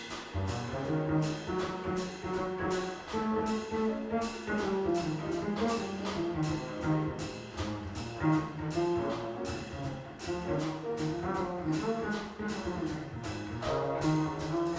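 Small jazz group playing live: a brass horn carries a melody over walking upright bass, piano and drums with steady cymbal strokes.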